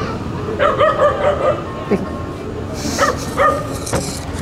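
A dog whining and yipping: a run of short calls about half a second in, then two short yips near the end.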